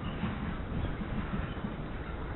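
Steady low rumbling noise on the microphone of a camera carried along at walking pace.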